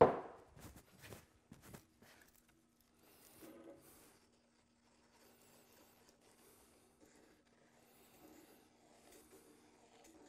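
Wooden stir sticks knocking against a small metal pot: one sharp knock at the start, then a few lighter clacks. After that, faint scraping and rubbing as the sticks stir the melted petroleum jelly and jam.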